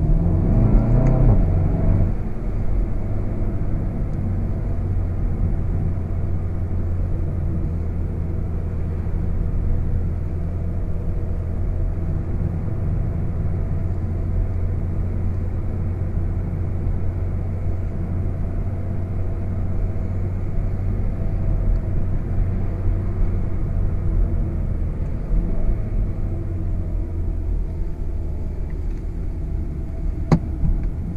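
In-cabin sound of a VW Golf VII GTI Performance's 2.0-litre turbocharged four-cylinder: the engine note rises as the car pulls in the first couple of seconds, then settles into a steady low drone with road noise at cruising speed.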